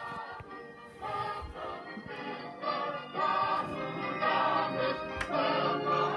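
Choir singing Christmas music over an orchestral accompaniment, played from a VHS tape through a television speaker. It grows louder about a second in and again about three seconds in.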